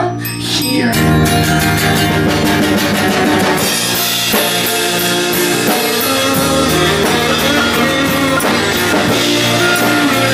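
A live band playing an instrumental passage: strummed acoustic and electric guitars over drums with a steady beat, the full band coming in about a second in after a brief dip.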